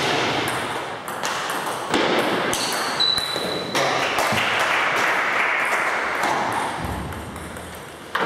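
Table tennis ball pinging off bats and table in a sharp, loud hit that ends a rally, followed by a few more pings as the ball bounces, all ringing in a hall's echo.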